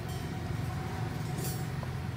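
Steady low background hum with a faint steady higher tone over it, with no distinct events.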